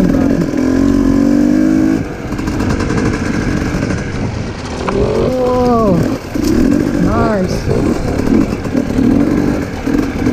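Dirt bike engine running under way, holding one steady pitch for the first couple of seconds. Then its revs rise and fall twice, about halfway through and again a couple of seconds later, over a continuous rumble.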